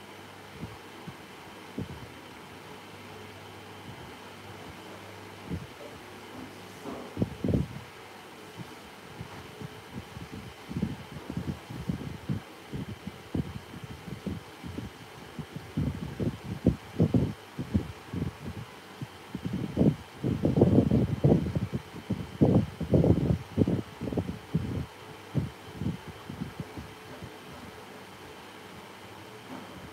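Soft, dull thuds and pats of fingers pressing and smoothing wet clay as a horse head is modelled onto a clay vase, scattered at first and coming thick and fast in the second half. A faint steady hum runs underneath.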